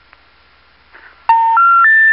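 Telephone special information tones, three steady beeps stepping up in pitch, each about a third of a second long, starting just over a second in over faint phone-line hiss. They signal a call to a disconnected number, the tones that come before the intercept recording.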